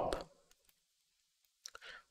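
A man's word trails off, then near silence broken by a few faint clicks, the last of them shortly before he starts speaking again.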